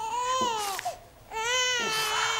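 Newborn baby crying: two long, high wails with a short break between them about a second in.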